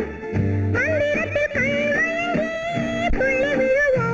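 Old Tamil film song: a high female voice sings a gliding, ornamented melody over orchestral accompaniment with plucked strings and low bass notes.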